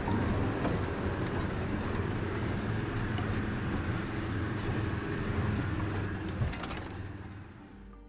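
Car engine and road noise heard from inside the cabin while driving on a rough dirt track, with scattered knocks and rattles; the sound fades down near the end.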